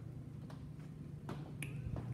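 A few light clicks, three in two seconds, over a steady low hum.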